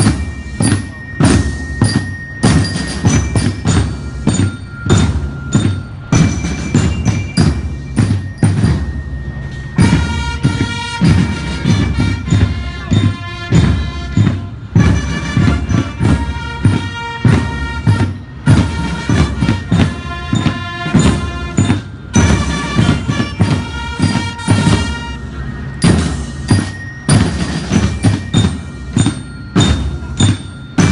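Military marching band playing a march: a steady beat of bass and snare drums, with bell lyres ringing out the melody.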